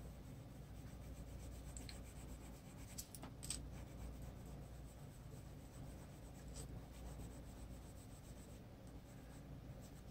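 Faint scratching of a Prismacolor colored pencil stroked back and forth over paper, with a few faint ticks about three seconds in.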